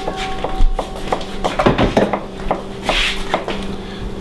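Kitchen knife tapping through soft cooked parsnip onto a plastic cutting board as it is cut into small pieces: a run of irregular light knocks.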